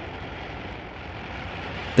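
Steady background rumble of vehicles, an even noisy wash with no clear engine note or single event standing out.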